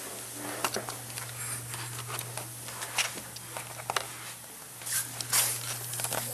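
Handling noise: scattered clicks, taps and short rustles as a handheld camcorder is moved about during a search, over a steady low hum.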